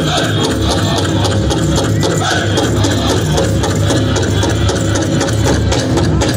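Pow-wow drum group pounding a fast, steady beat on a large shared drum, with the singers' high voices at moments and the jingling of the dancers' bells.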